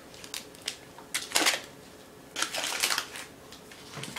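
A foil butter wrapper crinkling and a knife cutting a knob of butter off the block, in a few short irregular rustles and clicks. There is a longer rustle about one and a half seconds in and another cluster near the end.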